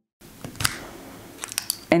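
Plastic foil crimper pushed along the copper-foiled edge of a glass strip: soft scraping with a few sharp clicks about half a second in and again after a second and a half, as the tool catches on the copper foil.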